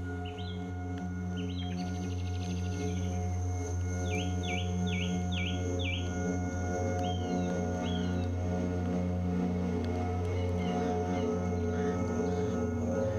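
Ambient music of sustained, held drone tones with birdsong over it. Early on there are short chirps and a brief trill, then five quick repeated falling notes about four to six seconds in, then a few more calls around eight seconds.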